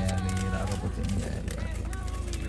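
A person's voice with long held notes over the low, steady road rumble inside a moving car.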